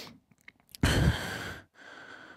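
A sigh blown straight into a handheld microphone held at the mouth about a second in, the breath rumbling on the mic, with a few faint mouth clicks before it and a softer breath near the end.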